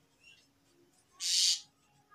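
Marker writing on a whiteboard: one loud scratchy stroke about a second in, lasting under half a second, with a faint short squeak before it.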